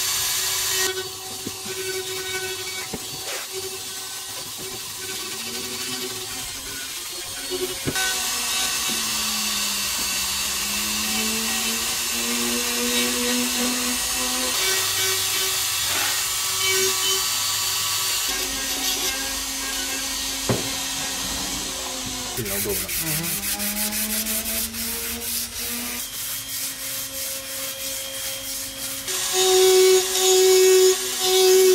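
A hand-held rotary engraving tool runs with a fine bit grinding into an ash wood axe handle. The motor's whine drifts up and down in pitch as the bit bites and eases off, over a steady gritty rasp of wood being cut. In the later part there is a fast, rattling chatter.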